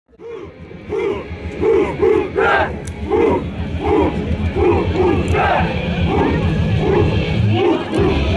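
A group of soldiers shouting together in a steady rhythm, a short shout about twice a second.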